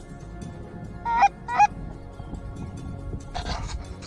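Two loud goose honks in quick succession about a second in, each with a sharp break in pitch, over a steady rush of wind; a short rush of noise comes near the end.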